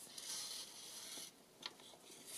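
Faint rustle of doubled linen thread drawn through the fingers and against a paper card while a bow is tied, with one small tick at about a second and a half.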